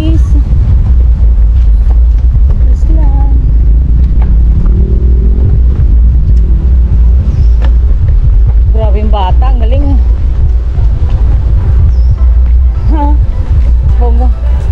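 Wind buffeting the microphone of a bicycle-mounted camera while riding: a loud, constant low rumble. A voice comes through briefly about nine seconds in and again near the end.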